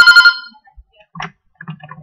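A short electronic alert tone, several steady pitches sounding together with a rapid pulsing flutter, lasting about half a second at the start.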